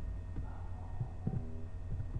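Computer keyboard being typed on, the keystrokes coming through as a few dull low thumps over a steady low electrical hum.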